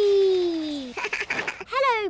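A cartoon girl's voice giving one long cry that slides slowly down in pitch as the toboggan runs out. It is followed near the end by short bursts of giggling.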